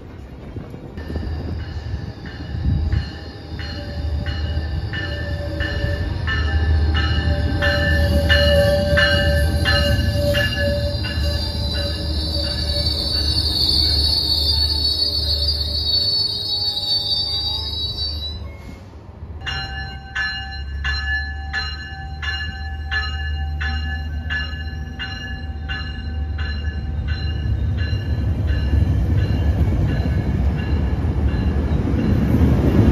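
Metrolink commuter train arriving: its bell rings steadily, about twice a second, over the low rumble of the train, and a high wheel squeal builds as it slows to a stop. After a break just past the middle, the bell rings again as the train departs and the bilevel cars roll past.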